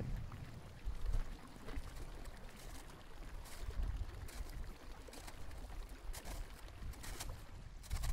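Low rumbling with scattered sharp cracks and pops: ice on the Greenland ice sheet fracturing as a meltwater lake drains through it.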